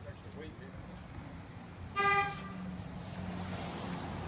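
A passing work van's horn gives one short beep about two seconds in, over the low sound of the van driving by.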